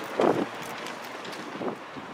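Wind on the microphone with a steady outdoor rush, and a brief voice sound near the start.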